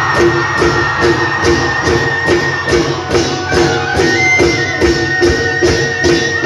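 Bihu folk music: dhol drums and cymbals beating a fast, even rhythm of two to three strokes a second under a held high melody line.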